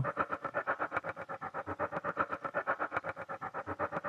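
Sempler sampler-sequencer playing a fast, stuttering loop of short slices cut from a recorded spring sample, about ten hits a second, with echo. The slice lengths of its 16 steps are randomized, so the hits vary in length and make a glitchy, irregular rhythm.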